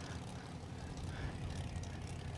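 Faint, steady low rumble of drag-race car engines running at low speed, with a light even hiss over it.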